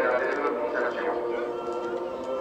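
Voices talking over a steady drone.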